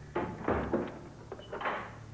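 A door being rattled and banged in two short bouts, with a dull thump about half a second in.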